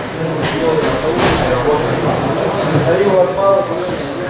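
Indistinct voices of several people talking in a large hall, with a brief knock about a second in.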